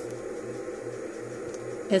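Steady low background hum of a small room, pulsing evenly about three times a second, with no distinct handling sounds.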